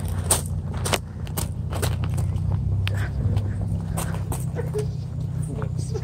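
A half-cut car's engine running steadily at low revs, with footsteps of people walking alongside, about two steps a second.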